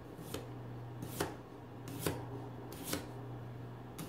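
A kitchen knife slicing a raw potato thin on a cutting board: four crisp cuts just under a second apart, each ending in a knock of the blade on the board.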